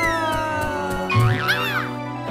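A cartoon character's high-pitched cry, falling slowly in pitch, then a shorter wavering cry about a second in, over steady background music.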